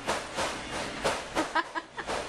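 A person laughing in a few short bursts over steady room noise.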